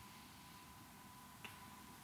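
Near silence: quiet room tone with a faint steady hum, and one short, faint click about one and a half seconds in.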